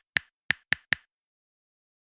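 Four short, sharp clicks in quick succession in the first second: an editing sound effect laid over a title card.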